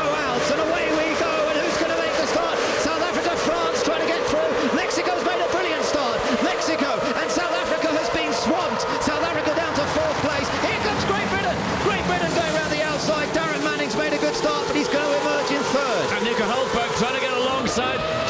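A full field of A1GP single-seaters with Zytek V8 engines launching from a standing start: many engines revving hard together, their pitch climbing and dropping at each upshift as the pack accelerates away and into the first corner.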